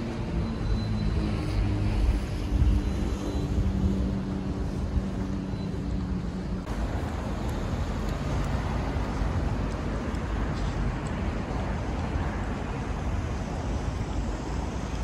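Street ambience with a steady low rumble and the hum of a vehicle engine that drops away about halfway through.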